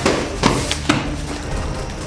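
Three sharp knocks about half a second apart, over a steady low hum.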